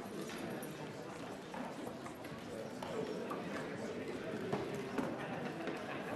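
Low chatter of many people talking at once in a large chamber, with scattered light knocks and clicks from desks, and two sharper knocks near the end.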